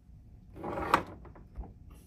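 A brief scraping rush that ends in one sharp knock about a second in, then a few light clicks: a hard object being slid and set down on a workbench.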